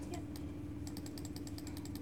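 Typing on a laptop keyboard: a couple of single keystrokes, then from about a second in a quick run of key clicks, around ten a second, over a steady low hum.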